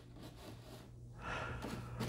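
Faint handling noise of small plastic toy accessories, a soft rustle with a few light clicks that grow a little louder in the second half, over a low steady hum.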